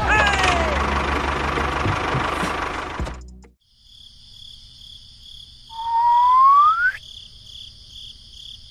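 A tractor engine running with a rattling rumble for about three seconds, then cut off. Then crickets chirping steadily, with one rising whistle partway through.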